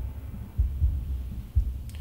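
Low, muffled bass throbbing in uneven pulses, with little above it.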